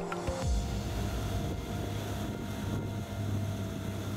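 A motorboat's engine runs as a steady low hum, with wind and water noise, from about half a second in, under soft background music.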